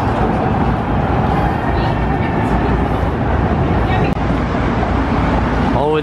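Steady, loud city street traffic noise: the running of engines and tyres of vehicles on the avenue.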